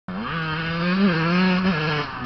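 1994 Yamaha YZ125's single-cylinder two-stroke engine running hard, its pitch lifting briefly about a second in and again near the end as the throttle is worked.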